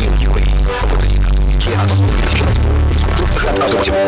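Music from an internet radio stream, with a loud, heavy bass line whose notes change every half second or so.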